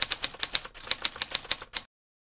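Typewriter keys clacking as a typing sound effect: a quick run of sharp strikes, about six a second at an uneven pace, that stops shortly before the end.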